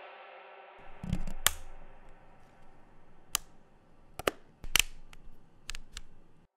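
A run of sharp, sudden cracks and clicks at irregular intervals, about ten in all, some coming in quick pairs.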